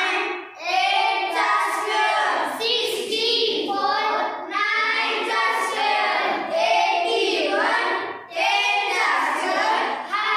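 A group of young schoolchildren singing together in unison, in phrases of a few seconds each with brief pauses between them.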